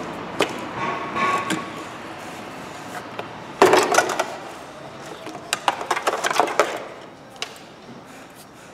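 Plastic clicks and knocks as an air filter housing and its intake hose are unclipped and pulled loose in a car's engine bay. The loudest clatter comes about halfway through, with a further run of quick clicks a couple of seconds later.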